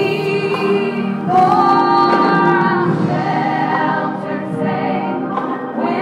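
Gospel choir singing a slow song, voices holding long notes.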